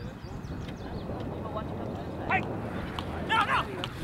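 Shouted calls from players on an outdoor football field: two short loud shouts, about two seconds in and again about three seconds in, over a steady low noisy background.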